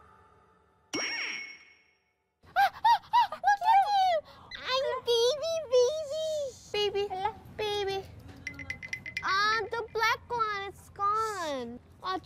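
Edited-in variety-show sound effects: a short bright chime about a second in, then a run of squeaky, high-pitched cartoon-style voices chattering in quick sliding phrases.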